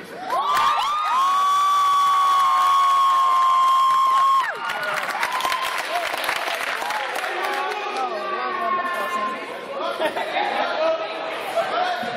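A group of male voices entering one after another and holding one long loud call in unison for about four seconds, cut off sharply, followed by crowd cheering and chatter with more held voices near the end.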